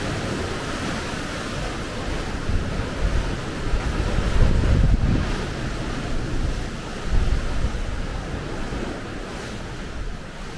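Sea surf washing against the rocky shore, with wind blowing on the microphone. The rumbling surges swell loudest about four to five seconds in and again around seven seconds.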